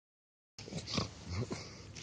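Several short, low grunts over a rustling hiss, starting abruptly about half a second in.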